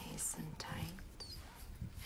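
Quiet whispered speech, a few soft words in the first second.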